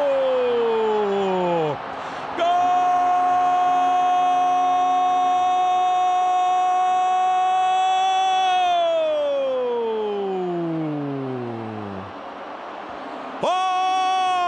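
A football commentator's long drawn-out goal shout. After a shorter falling call, one note is held steady for about six seconds, then slides down in pitch for a few seconds before breaking off. Stadium crowd noise runs underneath.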